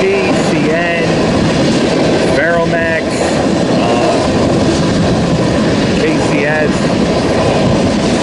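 Empty crude-oil tank cars of a BNSF freight train rolling past at close range: a steady, loud rumble of steel wheels on the rails.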